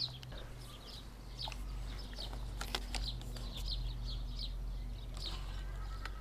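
Small birds chirping, with many short high calls throughout, over a low steady hum and a few faint clicks.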